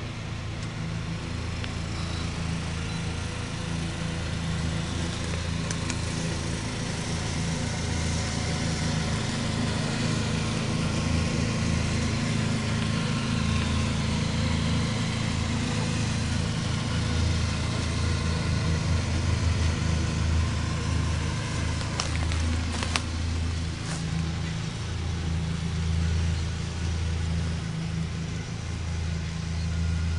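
Kubota ride-on mower's engine and cutting deck running steadily as it mows grass. The engine gives a low, even hum that swells slightly in the middle and eases again toward the end.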